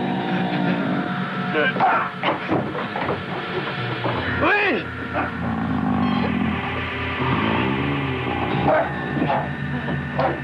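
A man groaning and crying out in distress, with one strong rising-and-falling cry about four and a half seconds in, over sustained music tones.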